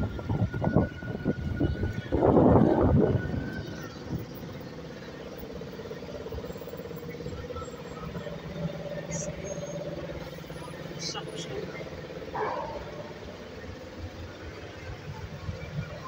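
City street traffic: a steady engine hum from a vehicle running close by, with some louder voices or handling noise over the first few seconds and a few light clicks later on.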